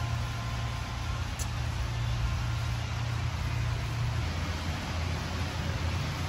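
Steady low rumble and hiss of a large store's background noise, with no distinct events.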